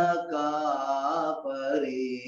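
A man singing a Telugu Christian hymn solo, in long held notes that bend slowly in pitch, with a short break about one and a half seconds in.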